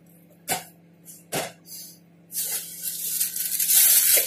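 Grocery items set down on a table with a few sharp knocks, then packaging rustling, growing louder from about halfway through.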